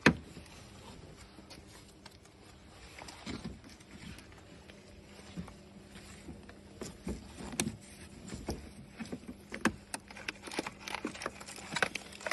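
Irregular clicks, knocks and rustles of gloved hands handling cardboard pill boxes and plastic trim in a car's engine bay, with a sharp knock at the very start and busier handling in the second half. A faint steady hum runs underneath.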